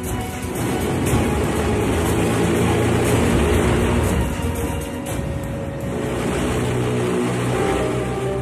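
Background music over a steady low drone of the airship's diesel propeller engines running.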